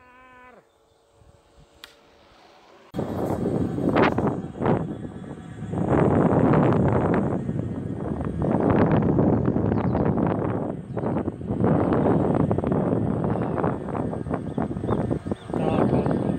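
A brief pitched whine right at the start, then from about three seconds in loud, gusting wind noise buffeting the microphone of a handlebar-mounted camera on an electric kick scooter riding at about 22 km/h.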